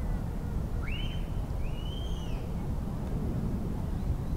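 Wind rumbling on the microphone, with two brief high-pitched calls about one and two seconds in.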